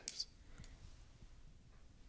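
A brief click just after the start, then near silence: faint room tone.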